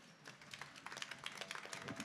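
Faint, rapid, irregular clicks and taps over a quiet hall background, growing denser about half a second in.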